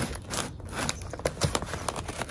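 Scissors cutting through a cardboard shipping box: a run of irregular snips and crunches, several a second.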